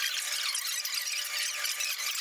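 Fast-forwarded audio of the eating session, sped up into a thin, high-pitched jumble with no low end.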